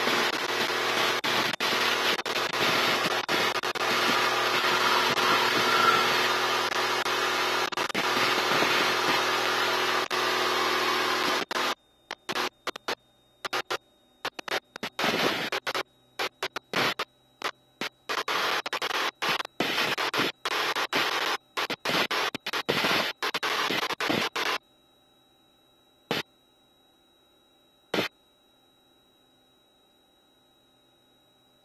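Light aircraft engine at full takeoff power, heard from inside the cockpit as a loud, steady drone. About twelve seconds in, the sound starts cutting in and out in short bursts. In the last five seconds it drops to near silence, with two brief clicks.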